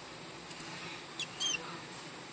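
A young live rat held in feeding tongs squeaking: a few short, high squeaks about a second in, over a quiet background.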